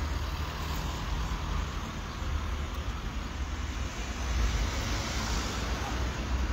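Street noise of distant road traffic, a steady hiss over a heavy low rumble, swelling briefly near the end.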